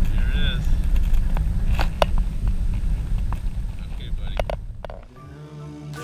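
Wind buffeting an outdoor microphone with a heavy low rumble, with brief snatches of voice; about five seconds in the rumble cuts out and background music begins.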